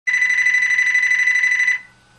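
One ring of an electronic telephone ringer, signalling an incoming call: a high, fluttering tone lasting a little under two seconds that cuts off sharply.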